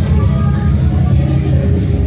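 Cars rolling slowly past with a loud, steady low engine rumble, mixed with voices and music from the street.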